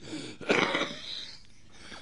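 A man's single short, noisy breath sound close to the microphone, about half a second in and lasting about half a second, with no voice in it.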